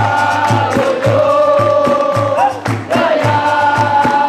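Capoeira music: a group of voices singing long held notes in chorus over a steady drum beat of about three beats a second.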